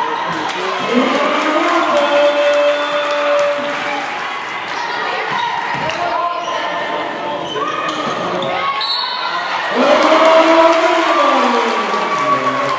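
A basketball being dribbled on a hardwood gym floor during live play, with voices shouting on the court and in the stands, echoing in the gym. The shouting is loudest near the end.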